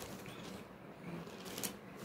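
Book pages being turned: soft paper rustling, with a brief louder rustle near the end.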